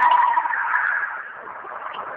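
A loud, rough screeching wail from the swamp, strongest in the first half second and then tailing off. The source is unidentified; locals variously take it for foxes, a female coyote or Sasquatch.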